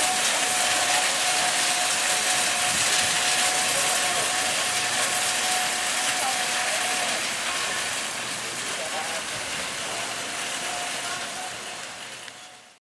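A train of metal shopping carts rolling and rattling as it is pushed along, a steady rumble of many wheels with a thin high whine running through it, fading toward the end.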